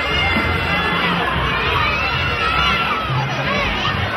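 Street crowd with many children shouting and shrieking as a festival big-head figure runs among them, over steady crowd noise. Band music with sustained low notes plays underneath.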